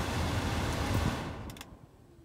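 Toyota Camry Hybrid's cabin climate-control blower running steadily, then cutting out and dying away over about half a second, with a couple of sharp clicks as it stops. The car's electrical power has shut off.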